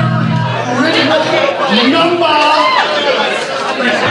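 Several voices talking over each other: crowd chatter in a small bar room between songs. The band's held low note stops about half a second in.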